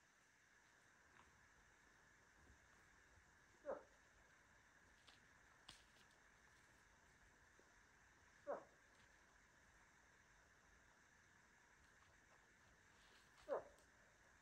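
Three faint, short moose calls, each a whine that falls in pitch, about five seconds apart, over near silence.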